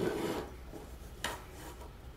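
A steel ruler rubbing across a plywood board in a short scrape, then one short click as it is set down about a second and a quarter in.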